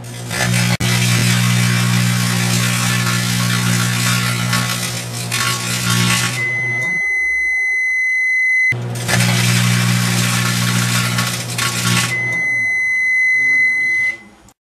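Sharp Carousel microwave oven running with a steady low hum and fan noise, then a long, steady, high-pitched beep; the run and the beep happen twice.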